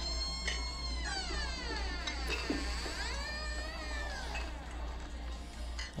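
Door hinges creaking as a door swings slowly: a long, wavering creak that slides down and back up in pitch for about four seconds, then dies away.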